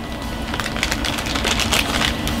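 Steak and vegetables sizzling in a cast-iron skillet, a steady crackle that thickens about halfway through, over a low steady rumble.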